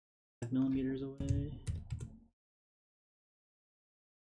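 A short hummed voice sound, then about a second of quick keystrokes on a computer keyboard as a number is typed in.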